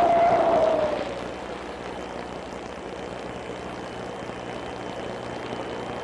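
Animated-cartoon sound effects: a brief, slightly falling tone about a second long, then a steady rushing, rumbling noise with a low hum underneath.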